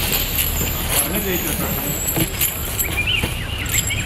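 Outdoor field sound: indistinct voices of people talking in the background over a steady low rumble.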